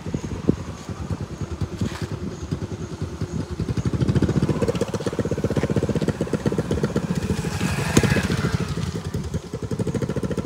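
An engine running with a rapid, even low beat, growing louder about four seconds in, with a sharp click near the end.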